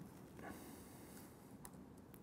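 Near silence: faint room tone with a couple of soft clicks from a laptop keyboard, about half a second in and again near the end.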